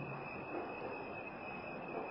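Steady background hiss of the recording, with a faint high-pitched steady whine running through it.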